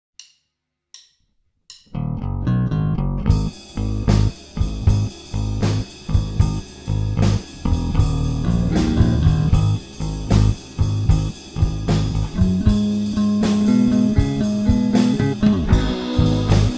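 Rock band's instrumental intro: three short clicks, then electric guitar, bass and drum kit come in together about two seconds in, playing to a steady beat that gets fuller a second later.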